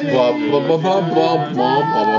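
Several people singing together a cappella, voices in harmony. A new phrase starts right at the beginning, and notes are held near the end.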